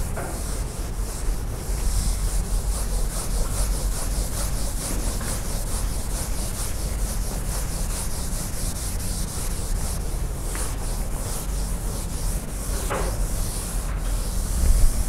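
Blackboard eraser scrubbing chalk off a blackboard in rapid, repeated back-and-forth strokes, with a steady low room rumble underneath.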